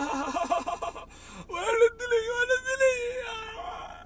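A man laughing hard: quick broken bursts of laughter, then from about a second and a half in one long high-pitched held laugh lasting about two seconds.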